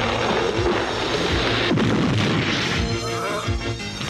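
Cartoon sound effect of a large tree crashing down, with a sharp crash just under two seconds in, over dramatic background music.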